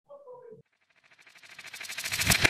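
A short faint voice at the start, then a rising whoosh with a fast flutter that builds over the last second: the opening of the ABC10 station's logo sting.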